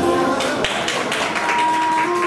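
Bamboo transverse flute playing over a recorded backing track. About half a second in, the backing switches to a rhythmic, tapping, plucked-sounding accompaniment, and the flute holds a steady note through the second half.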